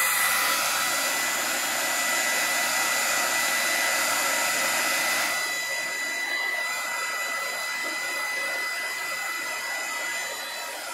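Hair dryer running steadily, aimed at the face: a continuous rush of air with a thin, steady motor whine. It gets a little softer about five and a half seconds in.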